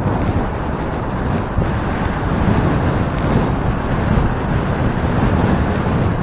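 Wind buffeting the microphone of a handlebar-mounted camera on a moving bicycle: a steady, loud rush of noise, heaviest in the low range.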